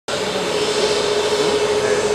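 Jet airliner's engines running as the plane moves on the apron at night: a steady rushing hiss with a steady whine beneath it.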